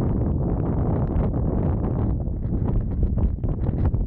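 Strong wind blowing across the microphone, loud, gusty and uneven.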